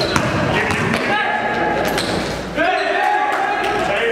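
A basketball being dribbled and bouncing on a gym floor during play, in a large echoing hall. A voice with long held notes runs over it.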